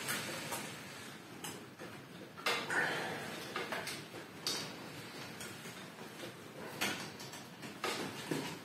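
Irregular small metallic clicks and knocks of pliers and wire as doubled wire is twisted tight around a steel rebar lever bending a bonsai branch.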